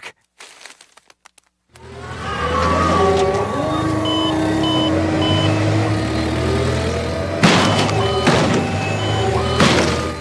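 A forklift's engine running with a steady low hum while its reversing alarm beeps in short high beeps, about two a second, in two runs: one about four seconds in and one near the end. A loud thump or crash comes about seven and a half seconds in.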